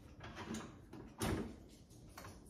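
A single-serve pod coffee maker being loaded with a pod: a few soft plastic knocks, then one louder clunk a little over a second in.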